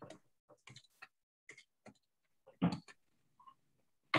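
Irregular clicks and taps of computer keys, about a dozen short strikes, with one louder, deeper knock about two-thirds of the way through.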